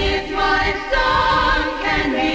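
Song music with held, choir-like voices in harmony and no words heard, coming back in at full level after a brief drop.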